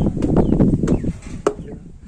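Footsteps in flip-flops slapping on concrete stairs while climbing, a few sharp slaps over a low rumble.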